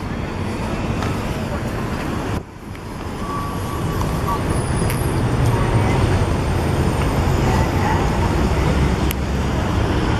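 Road traffic: cars, SUVs and trucks driving past on a multi-lane city street, a steady rumble that grows louder from about four seconds in. The sound drops out briefly about two and a half seconds in.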